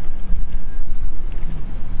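Steady low rumble of outdoor background noise with a faint hum.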